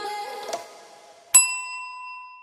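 Electronic outro music fades out, then about a second and a half in a single bright ding sound effect strikes and rings on, decaying slowly.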